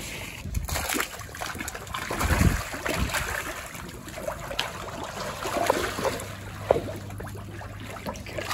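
Water splashing and churning as a dense mass of fish feeds at the surface on scraps tipped into the water, with many small slaps and plops, busiest a couple of seconds in.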